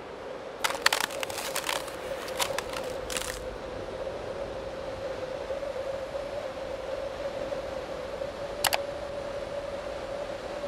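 Intro sound effect: a steady low hum under a faint hiss, with a quick run of small crackling clicks in the first few seconds and one sharp click about three-quarters of the way through.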